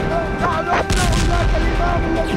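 Explosions and blasts: a continuous heavy low rumble, with several sharp cracks between about half a second and a second in.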